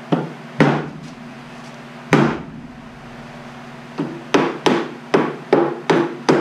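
Hammer tapping on the pine boards of a wooden 10-frame deep beehive box, knocking a part into place during assembly. Three spaced taps come first, then a quicker run of about six taps near the end.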